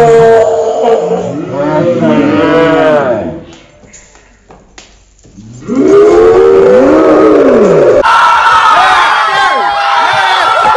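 A woman's long, drawn-out wailing cries of pain after being pepper-sprayed in the face, with a short lull of a few seconds in the middle before another long cry. Near the end it cuts abruptly to several overlapping voices.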